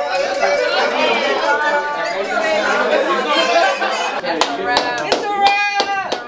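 A room of people chattering over one another. Then, in the last two seconds, a quick run of sharp taps mixed with a voice.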